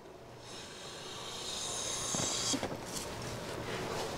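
A WoodRiver #5-1/2 bench plane taking a full-width shaving along the edge of a red oak board. The blade's cutting makes a hiss that grows louder and stops sharply about two and a half seconds in, with a light knock of the plane around then.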